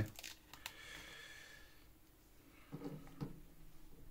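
Faint clicks and rustling of plastic Lego pieces being handled, with a brief low murmur from a man's voice about three seconds in.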